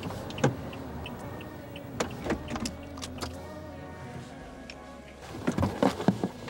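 A car pulling to a stop and sitting with its engine idling, with a few sharp clicks and knocks, louder near the end; a soft music drone runs underneath.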